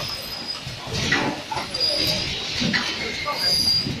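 Automatic cardboard-box packing machine for LED products running: irregular mechanical clatter and knocks, with brief high-pitched squeals every second or two.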